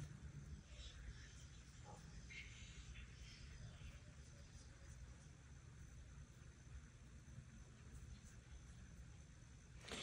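Near silence, with faint, scattered barking from several distant neighbourhood dogs outside, mostly in the first half.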